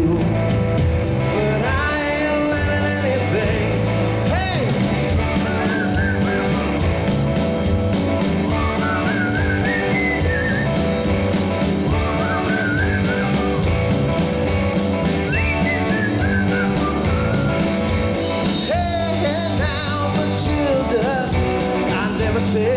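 Live rock band playing an instrumental stretch: electric guitar, bass and drums keep a steady beat while a lead line of gliding, bending notes runs over them.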